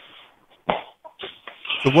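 A person coughing in short bursts, heard over a telephone line, with a word of speech starting near the end.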